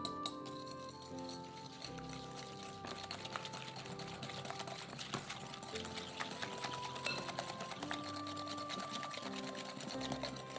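Wire balloon whisk beating egg yolks and sugar in a glass bowl, the wires ticking rapidly against the glass, busier from about three seconds in, as the mixture is whipped until pale. Background music plays under it.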